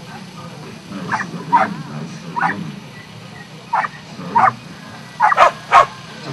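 A border collie barking in short, sharp barks, about seven of them at irregular intervals, with the last two near the end the loudest. It is excited barking during a disc-catching routine.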